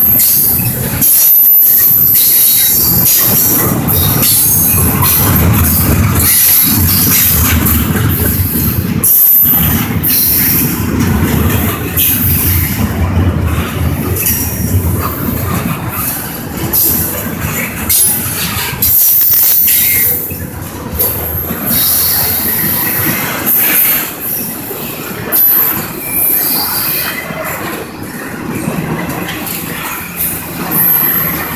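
Norfolk Southern double-stack intermodal well cars rolling past at close range: a loud, steady rumble of steel wheels on rail, with high-pitched wheel squeal coming and going over it. The sound becomes more uneven in the second half.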